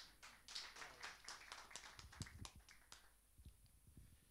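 Faint, scattered hand claps from the seated audience, thinning out and dying away after about two and a half seconds.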